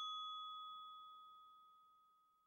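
The tail of a single bell-like ding, its clear ringing tone dying away and gone by about halfway through.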